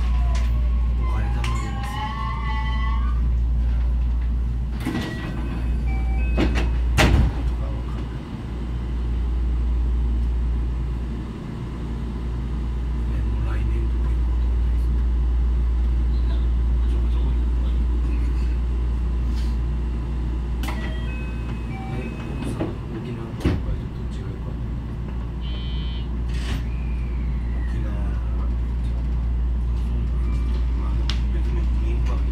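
223 series electric train running along the line, heard from on board as a steady low rumble with a handful of sharp knocks from the track. A brief wavering pitched sound comes about a second in, and short steady tones sound twice, near the middle and again about two-thirds of the way through.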